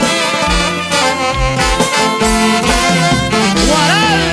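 Live band music: an instrumental passage with saxophones over a steady bass and drum beat.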